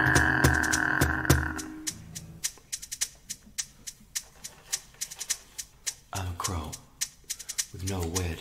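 A song ending: a held sung note and acoustic guitar ring out over an electronic drum machine's clicking beat and fade away within the first couple of seconds. After that the drum machine keeps ticking steadily on its own, with a brief murmur of voice twice near the end.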